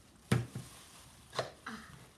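Pull-ring lid of a can of sweetened condensed milk being opened: two sharp clicks about a second apart, the first the louder.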